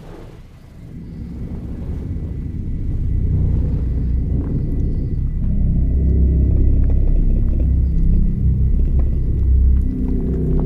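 Low rumbling drone of horror-film sound design, swelling up over the first few seconds and then holding loud, with a faint thin high tone over it. It opens with a short click.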